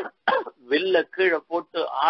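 Only speech: a man's voice talking in quick, broken syllables.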